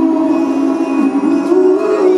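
Live pop-rock ballad heard from the audience in a large arena: a male lead vocal holds long, slowly bending notes over the band.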